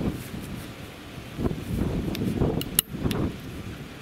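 Wind buffeting the microphone in uneven gusts, a low rumble, with one sharp click about three quarters of the way through.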